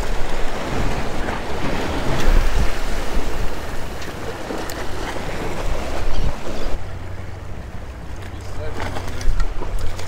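Waves washing and splashing against the rocks of a jetty, with wind buffeting the microphone as a steady low rumble. The splashing is fullest over the first six or seven seconds, then turns duller and softer.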